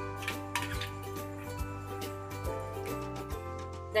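Wooden spoon knocking and scraping against a pan while thick masala paste is stirred, a series of light irregular knocks, over steady background music.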